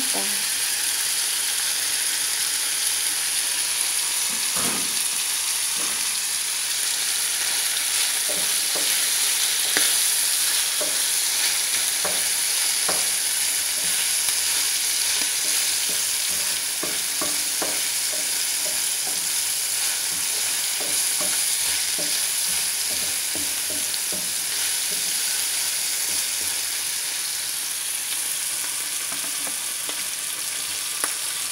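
Shrimp and onion sizzling in hot oil in a small nonstick frying pan, a steady hiss, with scattered light taps and scrapes of a wooden spatula stirring them.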